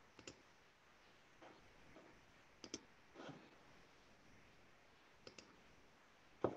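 Near silence with a few faint, sharp clicks, some in quick pairs.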